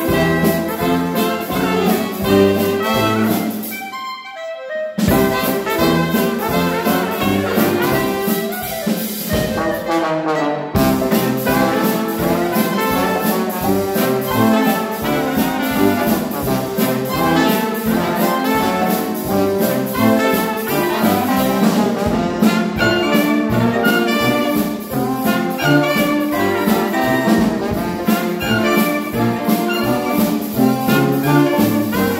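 Live Dixieland jazz band playing an up-tempo number, with trumpet, trombone, clarinet and alto saxophone over banjo and drum kit. The full band drops out briefly about four seconds in and again just after ten seconds, then plays on.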